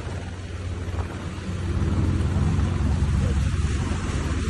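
Steady low engine drone with the rush of water from craft under way on a river; it grows louder about a second and a half in.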